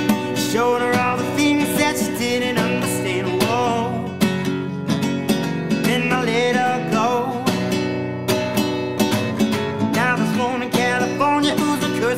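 Acoustic guitar strummed in a steady rhythm, with a male voice singing over it in places.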